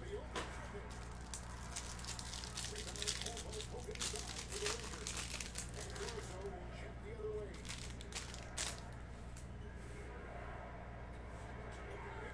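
Clear plastic wrapper on a pack of trading cards crinkling and tearing as it is pulled open by hand, with dense sharp crackles through the first half. Then sparser clicks and slides as the cards are handled.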